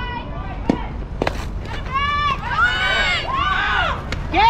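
A pitched softball pops into the catcher's mitt with a sharp snap about a second in. From about two seconds on, girls' high-pitched voices yell and cheer from the field and dugout.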